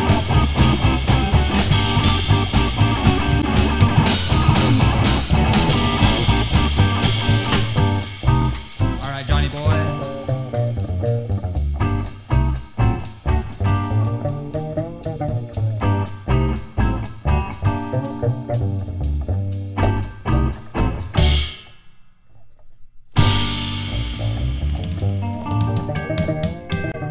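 Rockabilly band playing live, with electric guitar, bass and drum kit. The full band thins out to a sparser part about eight seconds in, drops out almost completely for about a second and a half near the end, then comes back in full.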